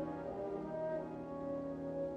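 Orchestral film score led by brass, with horns holding slow, sustained chords.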